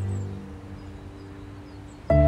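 Background music fades out in the first half second, leaving faint outdoor ambience with a few short, high bird chirps.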